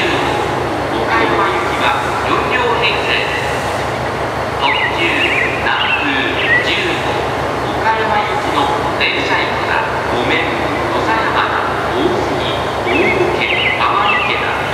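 Diesel railcar engines idling at a station platform, a steady low throb pulsing several times a second, with people talking over it.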